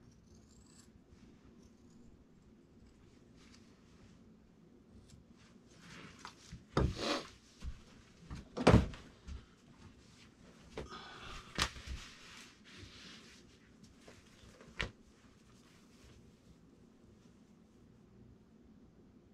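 Handling noises as a stiff upholstery cover is fitted over a car-seat foam cushion on a workbench: bursts of rustling material and a few sharp knocks, the loudest a single knock about nine seconds in, with a quiet room between them.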